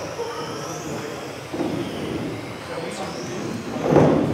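Radio-controlled racing cars running on an indoor track, their motors whining in a pitch that rises and falls as they speed up and slow down, heard in a large echoing hall with voices. A louder burst comes right at the end.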